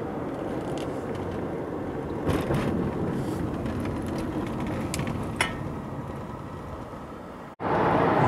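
Steady road and engine noise heard from inside a Mercedes-Benz car's cabin while it is driven, with a couple of faint clicks. The sound breaks off abruptly near the end.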